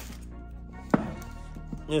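A single sharp knock about a second in from handling the router in its tool bag, over steady background music.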